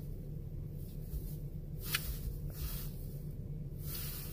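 Soft breaths through the nose, a faint hiss every second or two, over a low steady hum inside a car cabin.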